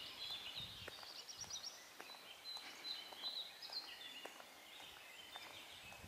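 Several small birds singing, with quick overlapping chirps and trills, faint against a quiet outdoor background.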